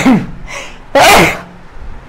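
A man sneezing loudly twice, the second sneeze about a second in.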